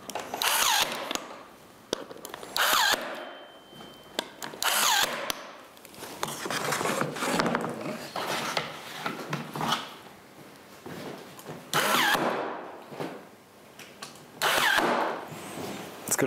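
Electric staple gun firing several times, each shot a short, loud mechanical burst a couple of seconds apart, tacking the ski layup down onto the mould.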